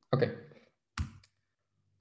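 A single short click about a second in, the click of advancing a presentation slide on a computer.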